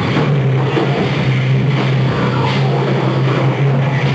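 A rock band playing loud live, with electric guitars, bass and drums, a low note held steady beneath it.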